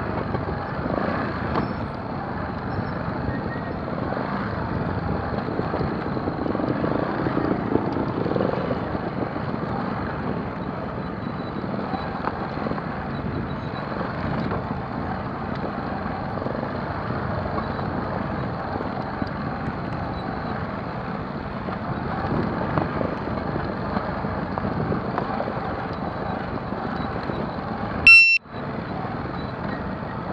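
Trial motorcycle being ridden down a rocky trail, heard from the rider's own camera: a steady rough rumble of bike, tyres on stones and wind. Near the end a short, sharp high-pitched squeal cuts in, and the sound drops out for a moment.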